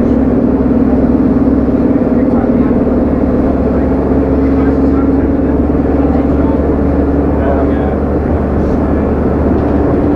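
Leyland Titan double-decker bus's diesel engine running steadily as the bus drives along, heard from inside the lower deck as a continuous low drone with road noise.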